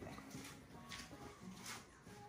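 Near silence: faint room tone with a few soft handling noises.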